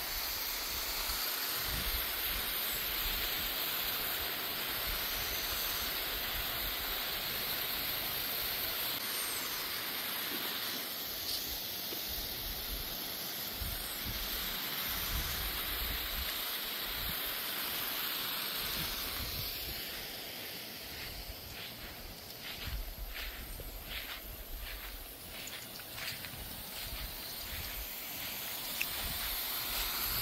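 Pop-up lawn sprinkler heads spraying water with a steady hiss. About two-thirds of the way through it turns a little quieter, and a run of short, quick pulses follows.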